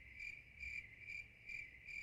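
Crickets chirping, used as an edited-in comedic "awkward silence" sound effect: a high, steady trill that pulses about twice a second.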